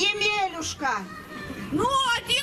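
A high-pitched voice speaking in short phrases, with brief pauses between them.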